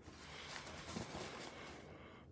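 Faint handling of a disposable diaper soaked with warm water as it is lifted and unfolded: soft rustling with a few light ticks.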